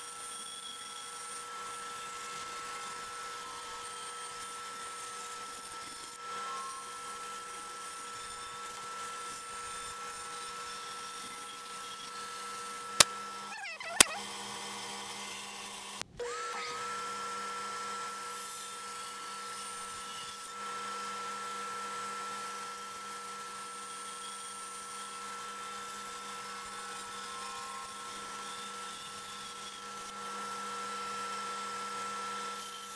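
Small benchtop bandsaw running with a steady high whine while it cuts a taped-together wood carving blank. Two sharp clicks about a second apart, just before the middle, are the loudest sounds. Shortly after them the sound cuts out briefly, then the saw's whine comes back.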